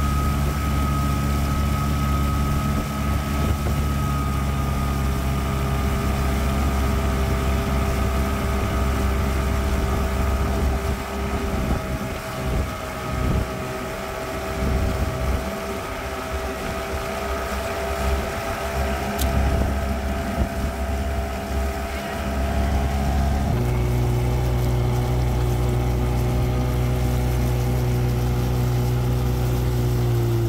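Boat outboard motor running steadily under way, with gusts of wind buffeting the microphone in the middle stretch. About two-thirds of the way through, the engine note changes abruptly, then holds steady again.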